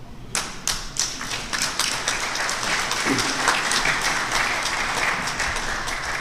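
Audience applause: many people clapping, starting suddenly just after the start and going on steadily, in greeting of an award recipient whose name has just been called.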